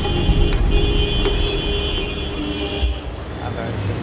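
Busy city street traffic: a continuous rumble of vehicles with a high, steady tone, horn-like, that holds until about three seconds in and then stops.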